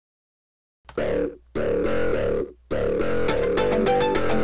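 Playback of several polyphonic music loops layered together, clashing because each is in its own key: totally out of key. Silent at first, the music starts about a second in, drops out briefly twice, then plays on.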